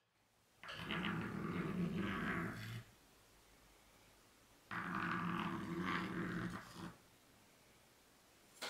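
Chalk scraping on a blackboard as two circles are drawn, one stroke after the other, each about two seconds long. The chalk chatters as it goes round, leaving a dotted line.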